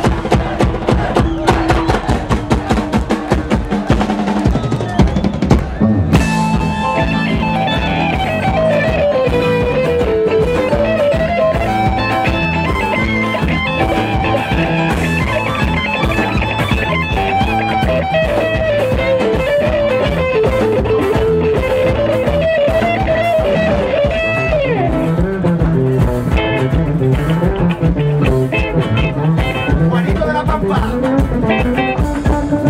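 Live band playing: a drum kit with acoustic and electric guitars and keyboard. For the first six seconds or so the drums play busy, dense strokes, then a lead melody with sliding pitch rides over the full band.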